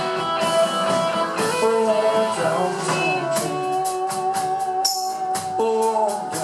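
Live small band playing an instrumental passage with acoustic guitar, upright bass and drums, a long note held through the middle, and evenly spaced percussion strokes in the second half.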